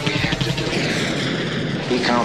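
Steady aircraft engine noise, part of a war sound-effects collage laid into the track.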